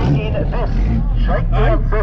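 Excited voices shouting and chattering over the steady low drone of a car engine, heard inside the car's cabin.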